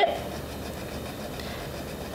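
Steady, even rubbing noise of a thick 1.2 mm fineliner pen on paper as a patch of ink is coloured in.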